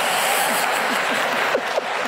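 Large theatre audience applauding, a dense and steady clapping.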